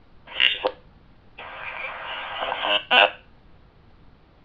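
Kenwood TK-3701D handheld radio's speaker playing a weak dPMR digital transmission, the voice broken into garbled, croaking fragments: a brief burst, then a longer stretch ending in a loud blip. The signal is not great.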